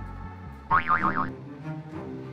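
Background music, with a cartoon boing sound effect a little way in: a springy tone that wobbles rapidly up and down in pitch for about half a second and is the loudest thing heard.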